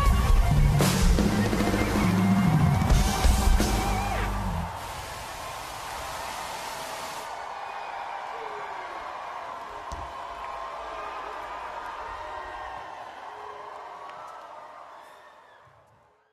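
Live funk-pop concert music with heavy bass and drums through a festival sound system stops about five seconds in. A large open-air crowd keeps cheering after it, fading out toward the end.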